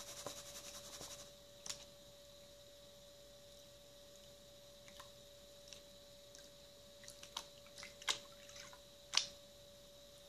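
Water sloshing in a plastic gold pan as it is swirled and dipped in a tub while panning paydirt. A washing sound for about the first second gives way to quieter water movement with scattered light clicks and taps of the pan, the loudest near the end, over a faint steady hum.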